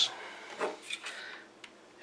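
Quiet handling of small plastic charging gear, a USB cable and an 18650 battery charger, being moved on a wooden table, with one small sharp click near the end.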